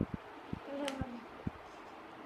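Several soft, dull taps about half a second apart as a child's hands press and handle stiff flashcards on a wooden floor, with a brief faint hummed voice near the middle.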